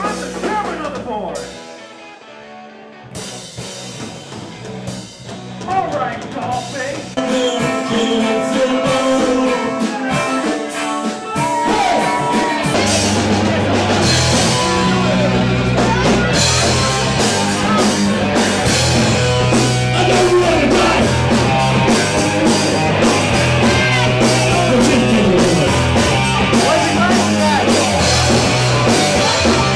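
Rock band playing: guitars with some vocals build up over the first dozen seconds, then drums and bass come in and the full band plays on at a steady beat.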